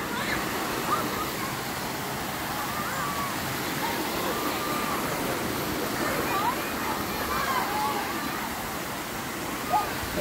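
Steady rush of water running and splashing down a sloping slab of bare rock in a shallow mountain stream, with faint distant voices of people playing in the water over it.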